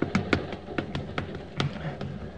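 Radio-drama sound effects on a moving train: a quick, irregular run of sharp taps, several a second, over a low steady rumble.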